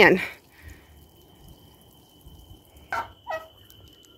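Domestic poultry calling: a loud call right at the start, then two short calls about three seconds in, over a faint steady high tone.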